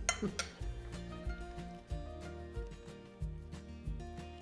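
A fork clinks twice against a dinner plate in the first half second. Background music with a steady bass beat plays throughout.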